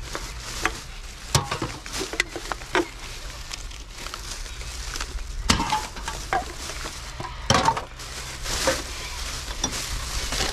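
Black plastic garbage bag rustling and crinkling as hands rummage through it, with sharp clinks and clatters of empty cans and bottles, loudest about one and a half, five and a half and seven and a half seconds in.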